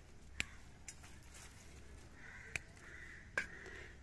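Mostly quiet, with a few short sharp clicks as a hand handles the bean vines and pods, and three faint hoarse calls in the second half.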